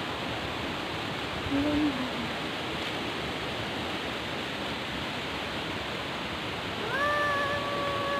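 Waterfall rushing steadily. Near the end a held, high-pitched tone sounds for about a second and a half.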